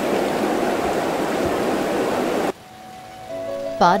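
Steady rush of running, splashing water in a seawater tank where sea grapes are grown. It cuts off suddenly about two and a half seconds in, and soft background music follows near the end.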